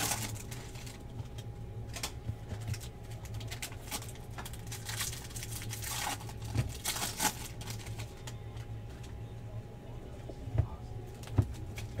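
Trading cards being handled and flipped through by hand: soft rustling and light clicking of card stock, with a few sharper clicks about halfway through and near the end, over a steady low hum.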